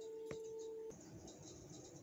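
A faint steady pitched tone that cuts off suddenly about a second in, with one soft click shortly before it stops.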